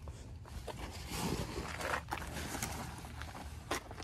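Rustling and scraping of a tent trailer's vinyl-and-canvas cover being handled, with a few short, sharp knocks in the second half.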